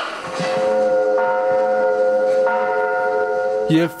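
Film soundtrack music: a sustained chord held steady, with higher notes joining about a second in and again midway. A man's voice cuts in at the very end.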